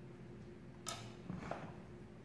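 Faint handling sounds at a kitchen counter: a sharp click about a second in, then a softer brush ending in a small tap, as hands place a garnish on a glass baking dish, over a low steady hum.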